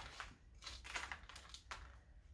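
Faint scratchy rustling and small clicks of hands pressing potting mix around a plant cutting in a pot: a sharp click at the start, then about half a dozen brief crackles.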